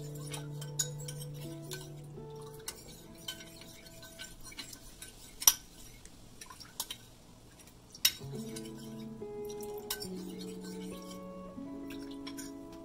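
Metal spoon stirring a runny arrowroot slurry in a ceramic bowl, scraping and clinking against the sides, with sharp clinks loudest about five and a half seconds in and again around eight seconds. Background music plays throughout.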